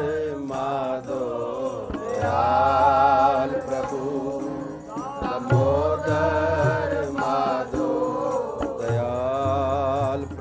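Gurbani kirtan: a male voice sings a shabad in long, wavering held notes over a harmonium, with tabla strokes underneath.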